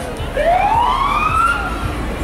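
Emergency vehicle siren wailing: one slow sweep rising in pitch, starting about a third of a second in and climbing for about a second before fading.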